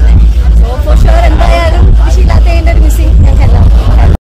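Voices talking over a loud, steady low rumble.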